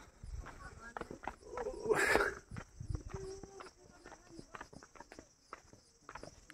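Footsteps on a dirt village path, a series of soft knocks, with a person's voice calling out briefly about two seconds in.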